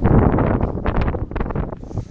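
Wind buffeting the camera's microphone in a loud, uneven rumble, broken by short rustles and knocks close to the microphone.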